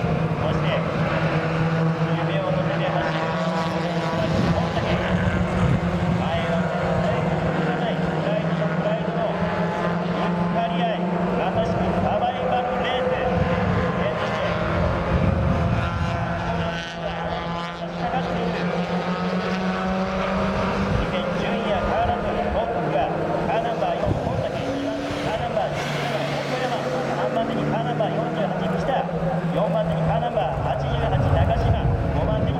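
A pack of Mazda Roadster race cars passing under load, several engine notes overlapping and rising and falling as the cars go by.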